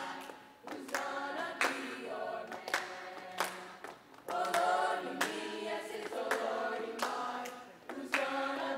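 Youth choir of boys and girls singing together, with hand claps on a steady beat, about three every two seconds.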